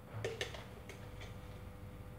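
A few light clicks and taps from a metal spoon and a plastic salt jar being handled, the two loudest close together in the first half second, then two fainter ticks, over a faint steady hum.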